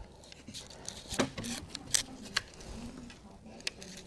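Faint, scattered small metal clicks and taps as a 3 mm Allen wrench is fitted to the screws of a mobility scooter's aluminium controller housing.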